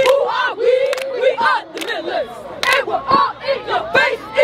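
A squad of cheerleaders shouting a chant together, with sharp hand claps roughly once a second.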